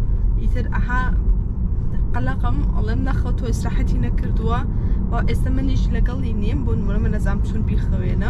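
A woman talking over the steady low rumble of road noise inside a moving car's cabin.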